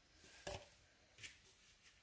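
Near silence: quiet room tone, with a faint short tap about half a second in and a softer one a little after a second.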